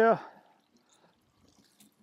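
A man's voice finishing a word, then near silence for the rest of the time.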